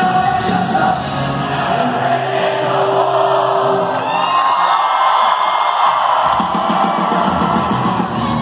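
Live rock band playing in a large hall, loud, with the crowd yelling and cheering. From about two seconds in, the drums and bass drop out for a few seconds, leaving a held guitar note and the crowd. The full band comes back in a little after six seconds.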